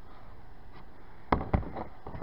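Handling noise: a few short knocks, the two loudest close together a little past the middle, over a steady faint background hiss.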